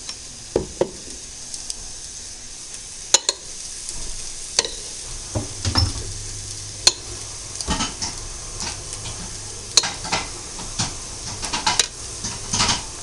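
Cutlery clinking and scraping against a dish of cherry tomatoes and olives dressed in oil and vinegar, in irregular sharp clicks with wet shuffling between them.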